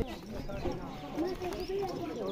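Several men's voices talking and calling out over one another.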